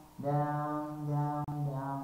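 A voice singing two long held notes without words, the first lasting over a second and the second starting near the end.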